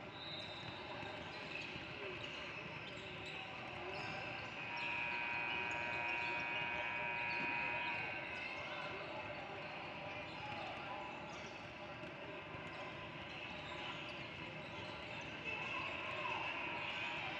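Basketballs bouncing on a hardwood gym floor amid the voices of players and spectators in a large gym hall. About five seconds in, a steady held tone sounds for roughly three seconds.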